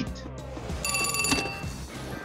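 A telephone rings once, a short bright ring of about half a second just under a second in, over low background film music.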